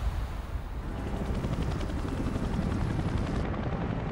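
Helicopter in flight, its rotor beating rapidly and steadily over engine noise, as the low rumble of a deep boom fades out in the first second.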